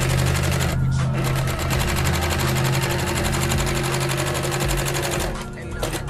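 Industrial triple-feed (walking-foot) straight-stitch sewing machine running at speed, its needle stitching very rapidly through upholstery material over a steady motor hum. It breaks off briefly about a second in and stops a little after five seconds.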